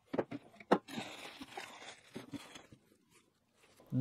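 Sharp clicks and knocks of hard plastic as the filament dryer's stacked plastic trays are lifted apart, followed by a soft rustling that dies away after about two and a half seconds.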